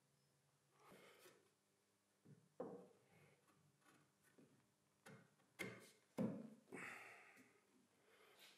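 Quiet knocks and scrapes of plywood frame pieces being fitted together and set on a wooden workbench while mortise and tenon joints are test-fitted: a soft scrape about a second in, then about half a dozen short knocks, the sharpest a little past the middle.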